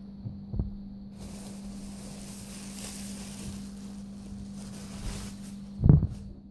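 Faux-fur fursuit feetpaw rubbing against the phone, a steady rustling hiss of handling noise, ending in a loud thump as the paw knocks the phone. A steady low hum runs underneath.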